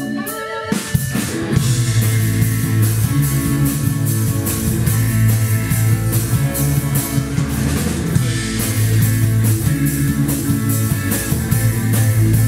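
Live rock band playing an instrumental passage on electric guitars, bass guitar and drum kit. The full band with a steady drum beat comes in about a second and a half in.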